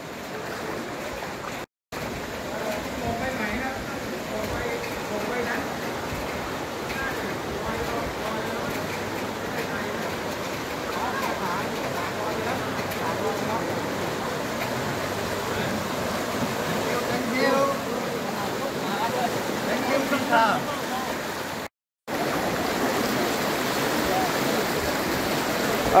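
Steady wash of floodwater moving and splashing around someone wading knee-deep through it, with faint distant voices; the sound cuts out twice for a moment.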